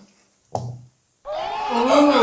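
Canned sitcom studio-audience reaction, many voices at once, cutting in just over a second in after a short low sound and a moment of dead silence.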